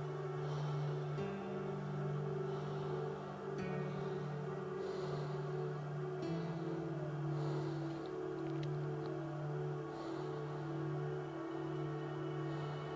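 Ambient background music: soft, sustained droning chords that shift to new pitches a few times.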